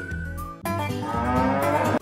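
A cow mooing: one long call that rises in pitch and cuts off abruptly, over light background music.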